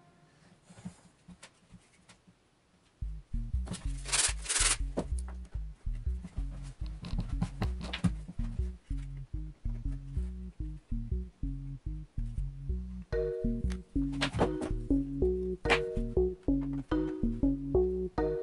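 Two short rasping strokes of a sanding block across the edge of a plastic model wall piece, about four seconds in. Background music with a repeating bass beat comes in about three seconds in and runs under the rest, with a melody joining near the end.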